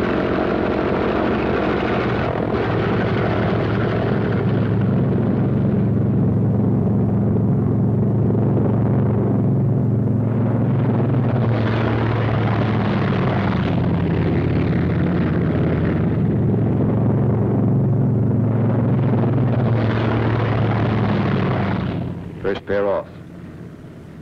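P-47 Thunderbolt fighters' Pratt & Whitney R-2800 radial piston engines running at takeoff power, a loud, steady drone with a deep hum, as the first pair of planes takes off. The engine sound drops away sharply about two seconds before the end.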